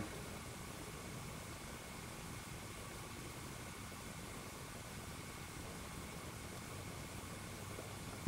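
Steady low hiss of room tone with a faint hum underneath; the hand work on the wires makes no distinct sound.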